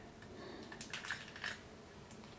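A few faint, quick clicks and taps of small plastic toy parts being handled, bunched together about a second in.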